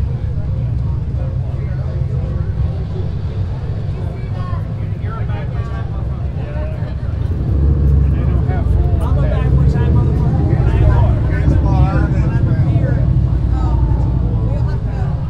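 Motorcycle engines running in the street, louder from about halfway through, with crowd chatter over them.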